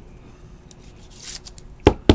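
A trading card and a rigid plastic top loader being handled: a soft sliding swish a little past halfway, then one sharp knock near the end.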